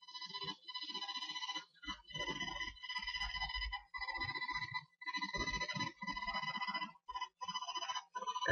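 A phone-like electronic ringing tone at a steady high pitch, coming in several bursts broken by short gaps, with lower, muffled sound underneath.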